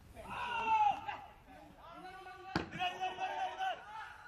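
Voices shouting and calling out, held and drawn-out, with one sharp knock about two and a half seconds in.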